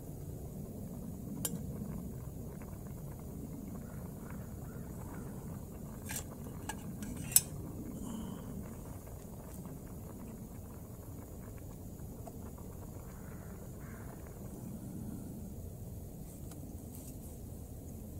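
A metal canteen cup clinking a few times as it is handled on a small gas stove, the sharpest clink about seven seconds in, over a low steady rumble.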